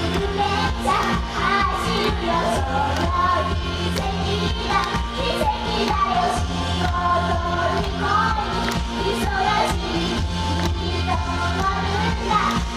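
Upbeat Japanese idol pop song played loud over a stage PA, with female voices singing over a steady beat and bass.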